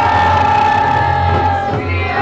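Several voices singing together in one long held note that eases off shortly before the end, over a steady low drone.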